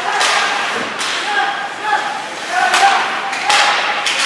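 Ice hockey play in an indoor rink: several short knocks and scrapes from sticks, puck and skates on the ice, with players' shouts mixed in.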